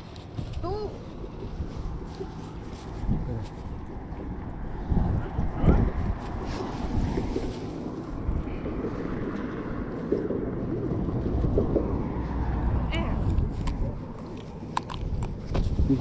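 Wind buffeting the microphone in an uneven low rumble, with occasional small knocks from handling.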